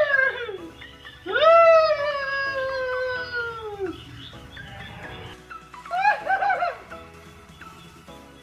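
A long, high, drawn-out cry that slowly falls in pitch over about two and a half seconds, then a shorter wavering cry about six seconds in, over background music.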